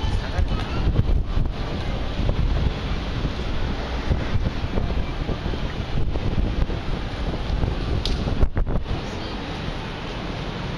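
Wind buffeting the microphone over the steady hubbub of a crowded pedestrian street, with passers-by talking.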